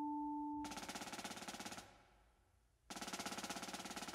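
Percussion ensemble playing: two held ringing tones die away, then a fast roll of rapid even strokes lasts about a second, a short pause, and a second fast roll starts near the end.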